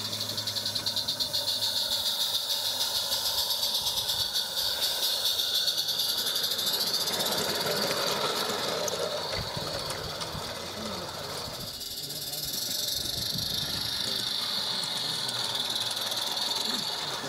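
16mm-scale live steam locomotive running past at close range, with a rapid, even exhaust beat over a steady hiss of steam. The beat fades about halfway through, as the wagons pass close by.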